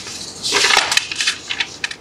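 Paper rustling and crinkling close to a lectern microphone, a dense crackle about half a second in followed by several short sharp clicks, as notes are handled and a page is turned.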